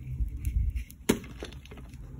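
A block of dyed gym chalk being squeezed and then snapping apart in the hands, with one sharp crack about a second in and a few small crumbling clicks after it.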